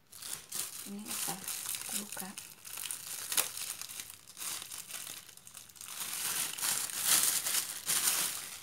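Clear plastic bag crinkling as hands handle it and pull a wrapped product box out of a cardboard shipping box, loudest near the end.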